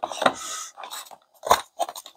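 A small cardboard box and packaging handled on a tabletop: a scraping, rustling stretch in the first half second or so, then a few short sharp clicks and taps about a second and a half in.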